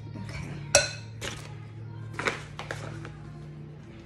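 A spoon clinking against a glass mixing bowl while stirring thick dough: a few separate clinks, the loudest and sharpest about a second in.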